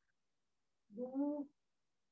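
A woman's voice calling out one long, drawn-out spoken syllable about a second in, a slow count through a yoga hold, with dead silence either side.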